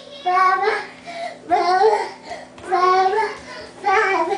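A toddler singing wordless, drawn-out notes in a sing-song voice: three long calls about a second apart, with a fourth starting at the end.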